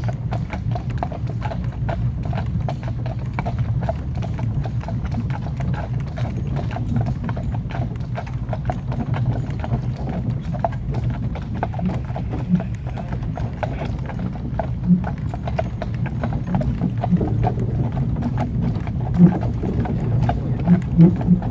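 Hooves of a pair of horses clip-clopping steadily on a tarmac road as they pull a cart, over a steady low rumble, with a few louder knocks in the second half.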